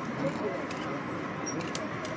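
People talking in the background over the steady running noise of a moving passenger train, heard from inside the car, with a few sharp clicks near the end.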